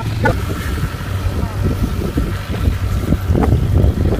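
Wind buffeting the microphone, a steady low rumble, with brief scraps of voices over it.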